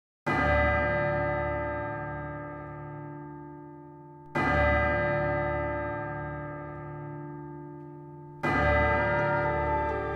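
A deep bell tolling three times, about four seconds apart, each stroke ringing on and slowly fading.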